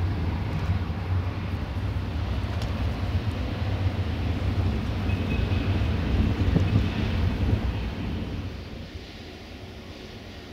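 Wind buffeting the microphone: a rough low rumble that eases off about nine seconds in.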